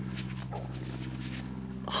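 A steady low buzzing tone from metal-detecting equipment, held unchanged for the whole stretch while a freshly dug coin is held close by.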